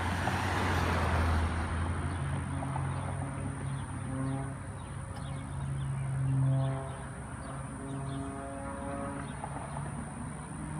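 A propeller-driven aerobatic airplane's engine drones in the sky. Its pitch steps up about two seconds in and then wavers slightly as the plane manoeuvres. The first couple of seconds are dominated by a louder rush of noise.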